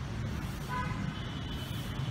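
Low, steady traffic rumble with a brief vehicle horn toot about three-quarters of a second in.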